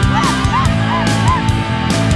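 Heavy rock music with drums and distorted electric guitar. The guitar plays a quick run of short bending, wailing notes over held chords.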